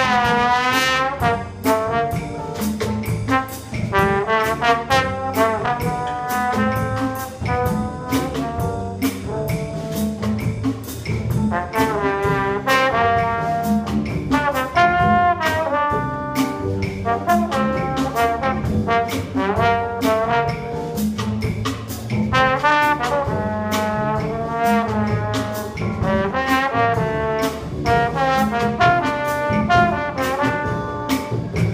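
Jazz big band playing a swing chart, with a trombone soloing over the saxophone section and a drum kit keeping a steady beat on the cymbals.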